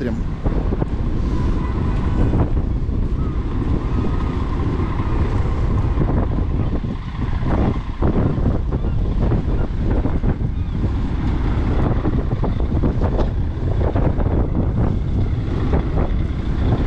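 Wind buffeting the microphone over a crane truck's diesel engine running steadily, with a faint constant whine.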